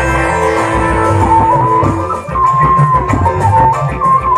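Loud live band music for a burok lion-dance performance, with plucked strings and a low drum beat; a lead melody with sliding, bending notes comes in about a second in.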